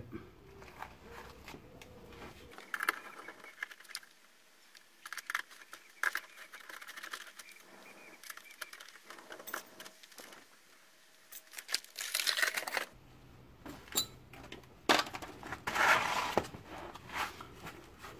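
Scattered clicks, scrapes and plastic rattles of a screwdriver working the last fasteners out of a car's plastic undertray, with louder bursts of scraping and knocking about twelve and fifteen seconds in.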